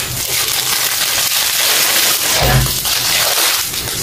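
Clear plastic wrapping crinkling and rustling as a bouquet of artificial flowers is unwrapped by hand, with a brief low bump about two and a half seconds in.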